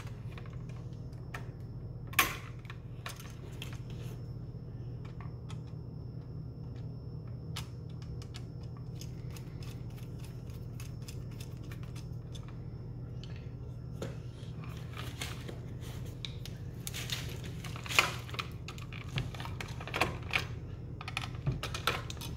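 Small metallic clicks and scrapes of hand tools working a wall receptacle: pliers bending wire ends around the terminal screws and a screwdriver tightening them, with a sharp click about two seconds in and a busier run of clicks near the end. A steady low hum runs underneath.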